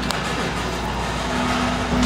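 Steady low hum and hiss of a big-box store's background noise, with a faint steady tone coming in about halfway through.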